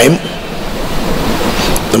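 Steady hiss of background room noise, with no clear tones or knocks, in a pause between a man's spoken phrases. His voice trails off at the start and comes back at the very end.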